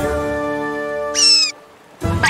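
Cartoon background music holding a sustained chord, with a short, high-pitched squeak a little past the first second, the loudest sound here; after that the sound drops away to quiet.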